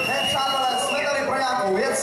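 A man talking into a microphone through the PA. A steady high whistle-like tone sounds under the voice for about the first second, then stops.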